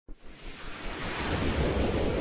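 Rushing whoosh sound effect of an animated logo intro: a broad rush of noise that swells steadily louder.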